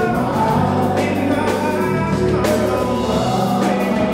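A live band of drums, keyboards, guitar and bass playing a soul/R&B song, with several voices singing together over it and cymbal hits marking the beat.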